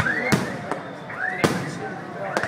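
Aerial fireworks going off overhead: two sharp bangs about a second apart, over a continuous background of high rising-and-falling chirps.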